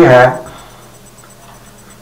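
A man's voice speaking Urdu for about half a second, then a pause of faint room tone in a small room, with a thin steady high whine.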